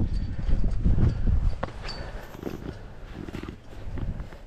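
A hiker's footsteps and scuffs on sandstone, with a loud low rumble on the camera microphone that eases after about the first second.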